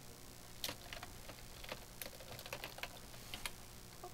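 Faint, irregular keystrokes on a computer keyboard: a scattering of light clicks.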